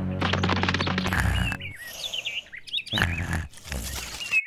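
Cartoon soundtrack: background music with a rapid clicking pattern, giving way a little under halfway in to a series of short bird chirps.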